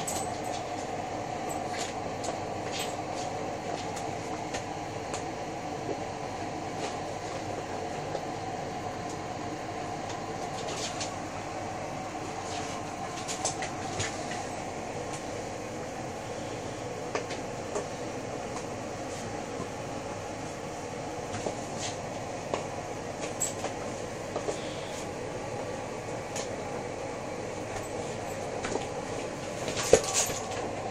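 A steady background hum with scattered light clicks and knocks from a puppy's claws and a football on a tiled floor. A sharper knock near the end as the ball is struck.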